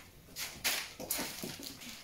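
Plastic pasta bag crinkling as it is folded shut by hand, in a few short rustles.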